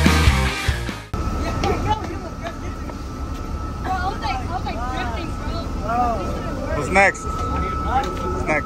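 Rock music stops abruptly about a second in. Then come teenage boys' voices over a steady low rumble with a constant high-pitched whine, and one loud shout about seven seconds in.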